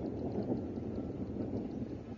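Steady, low rumbling outdoor background noise, such as wind buffeting the microphone or distant traffic.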